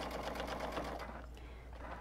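Sewing machine running fast on a zigzag stitch, its needle strokes in a quick even run, then stopping about a second in.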